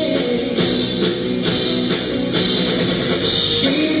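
Rock band playing an instrumental passage: guitar over a steady drum-kit beat of a little over two strokes a second, with the vocal line coming back in at the very end.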